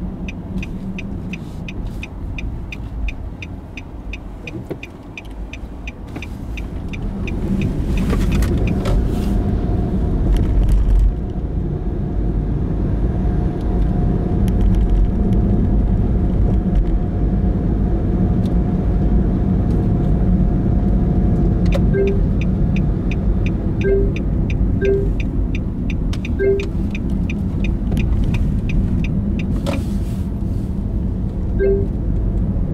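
Car cabin while driving: steady engine and road rumble that gets louder about seven seconds in as the car speeds up. A turn-signal indicator ticks rapidly, two or three ticks a second, through the first several seconds and again over the last eight seconds.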